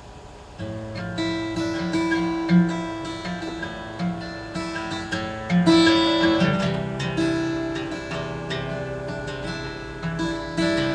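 Solo acoustic guitar playing a song's instrumental introduction, starting about half a second in: chords picked and strummed, with the notes ringing on.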